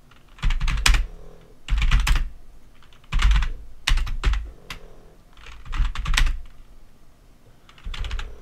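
Computer keyboard being typed on in about five short runs of keystrokes, with pauses between them.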